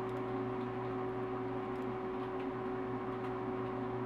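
Steady background hum with a few faint constant tones over light hiss, unchanging throughout, with no distinct events.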